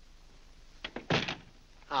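Heavy wooden front door shutting about a second in: a latch click followed by a solid thud.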